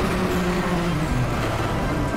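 Loud, steady rumbling sound effect of a cartoon magic spell taking hold, with low held notes of music beneath it.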